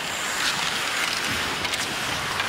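Ice hockey arena sound during live play: a steady wash of crowd noise mixed with skates scraping the ice, with a few faint clicks near the end.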